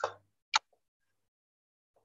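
Two short clicks over silence: one that fades quickly at the start, and a sharper, louder one about half a second in.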